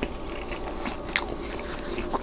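Close-miked chewing of a Papa John's meatball pepperoni Papadia, a folded flatbread sandwich: moist mouth sounds with small crust crackles, and one sharper crunch about a second in.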